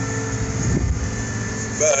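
Tractor engine running steadily under load while pulling a disc harrow across a field, heard from inside the cab as an even hum and rumble.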